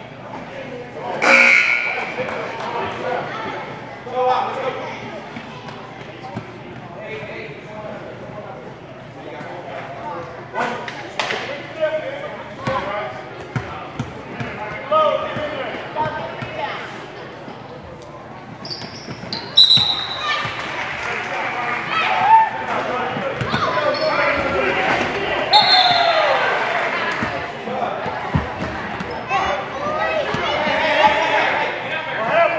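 Basketball thudding on a gym's hardwood floor and hoop during free throws, the hits echoing around the hall. The loudest hit comes about a second in, with a brief ring after it. Voices of players and spectators fill the gym, growing busier in the second half.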